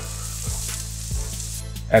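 Sliced red onion sizzling in a hot nonstick frying pan as it is stirred with a spatula.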